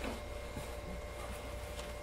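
Quiet room tone: a steady low hum with faint hiss and no distinct handling sounds.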